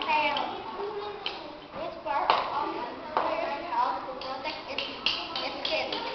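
Young children's voices speaking, reading a class presentation aloud.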